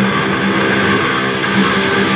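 Maestro SG-style electric guitar played through an amplifier with distortion, notes ringing on steadily.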